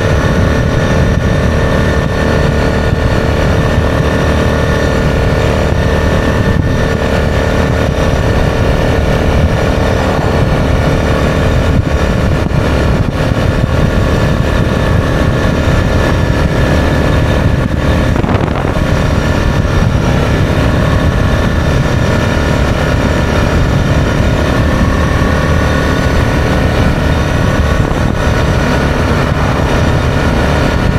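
Yamaha Grizzly ATV engine running steadily at cruising speed, with a low wind rumble on the microphone.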